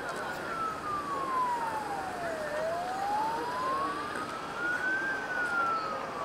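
An emergency vehicle's siren in a slow wail: one long fall in pitch, a slow rise about halfway through, then falling again near the end, over steady background noise.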